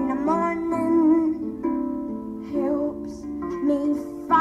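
Solo harp accompanying a woman singing. The sung line fades after about a second and a half, the plucked harp notes carry on alone, and the voice comes back briefly before the end.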